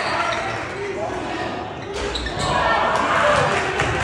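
A basketball bouncing repeatedly as it is dribbled on a hardwood gym floor, among the voices of spectators and players.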